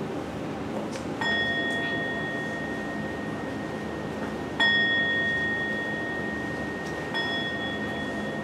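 A small meditation bell struck three times, about a second in, midway and near the end, each strike ringing on in a clear, steady high tone until the next.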